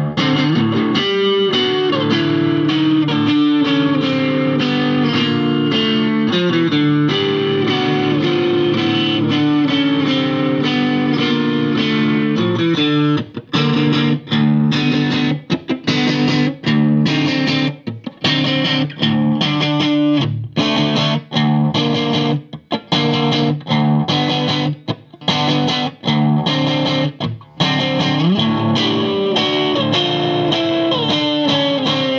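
1958 Danelectro U2 electric guitar played with both lipstick pickups on in series, the middle switch position, which works almost like a humbucker. Held, ringing chords and notes for about the first half, then short, choppy strummed chords broken by brief silences.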